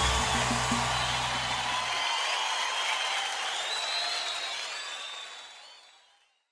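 The end of a samba song: the band's last notes and bass stop about two seconds in, leaving audience applause with whistles that fade out to silence near the end.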